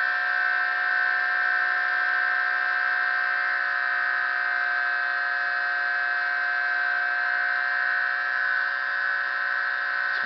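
Bedini-type pulse motor running steadily, a continuous high-pitched whine made of several steady tones with no change in speed.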